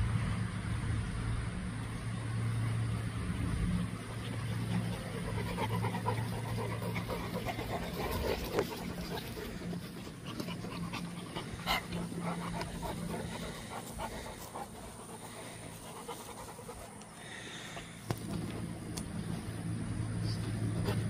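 A Cane Corso panting with its mouth open, in quick rhythmic breaths. A low steady hum runs underneath for the first several seconds, fades out, and comes back near the end; a few sharp clicks are scattered through.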